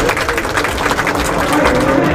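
A crowd clapping, with voices chattering underneath.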